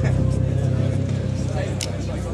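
A steady low background rumble with a faint steady hum above it, and a single sharp click near the end.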